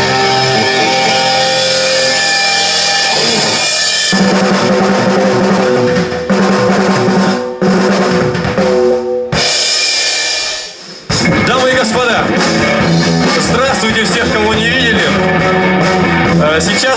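Live rock band playing electric guitar and drum kit through a PA system. The level drops briefly about ten seconds in before full playing resumes.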